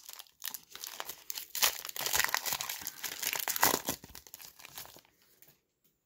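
Foil trading-card pack wrapper crinkling as it is torn open and handled, in irregular crackly bursts that die away about five seconds in.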